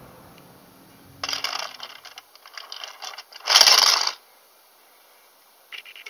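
Plastic clicking and clattering for about two seconds, then a loud half-second crash about three and a half seconds in: the sound of a Transformers toy figure being knocked over.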